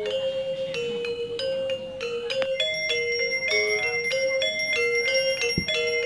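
A Balinese gamelan angklung ensemble of bronze metallophones plays a ceremonial melody for a cremation rite. The notes are short and ringing and step back and forth among a few pitches, and a steady high ringing tone joins about halfway through.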